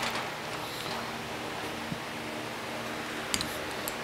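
A screwdriver prying the lid off a small can of valve grinding compound, with a couple of sharp clicks a little over three seconds in, over the steady hum of a shop fan.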